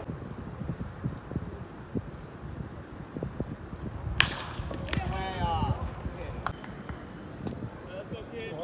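A pitched baseball smacking into the catcher's mitt: one sharp, loud pop a little past the middle, followed by brief voices.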